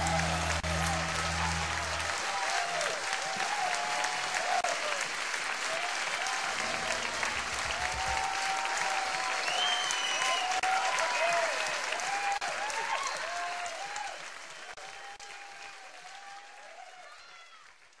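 Audience applauding and cheering, with shouts and whoops over the clapping, fading out over the last few seconds.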